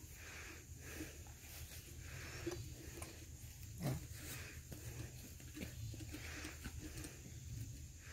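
Faint patter and rustle of loose, dry soil trickling from a hand onto the ground. A brief low falling sound is heard about four seconds in.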